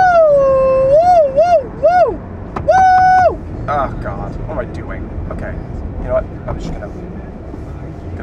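A man's voice belting long, high, wordless notes that waver and slide for the first three seconds or so, then softer short vocal bits, over the steady low rumble of road and engine noise inside a moving car's cabin.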